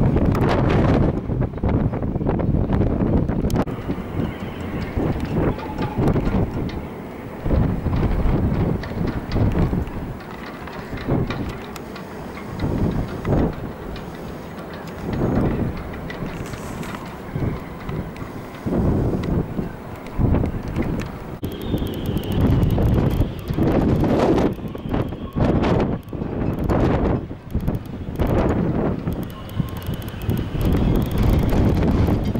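Gusty wind blowing across the microphone: an uneven low rumble that swells and drops irregularly.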